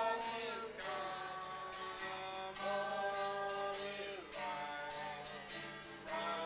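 A small group of voices, children and a man, singing a song together in long held notes, accompanied by a strummed acoustic guitar in a steady rhythm.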